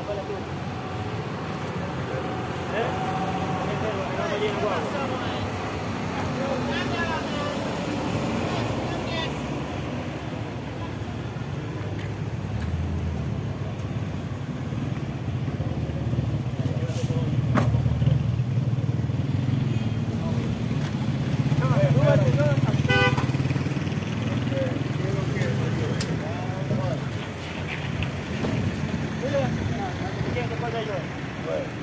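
Motor vehicle engines running close by in street traffic, under indistinct voices; the engine rumble is loudest a little past the middle.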